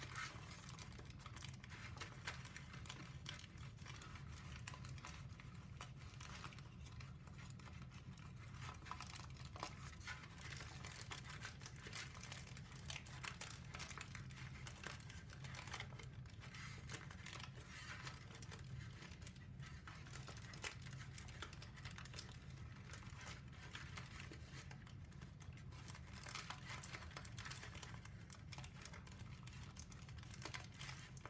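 Pre-creased sheet of brown origami paper crackling and crinkling as it is folded and pinched into shape by hand, in small irregular crackles, over a low steady hum.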